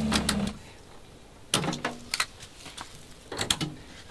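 A small 12-volt water pump humming with water running through the tap, cutting off about half a second in as the mixer is shut off. Then a few light clicks and knocks of a hose fitting being handled.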